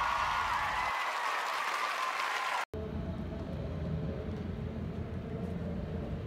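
Applause with some cheering after a spoken speech, cut off abruptly about two and a half seconds in. A steady low outdoor rumble follows.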